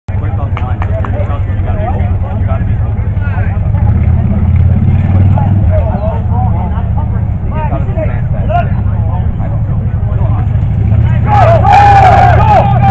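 Indistinct shouting and calls from football players and sideline teammates, over a steady low rumble, with louder shouts near the end.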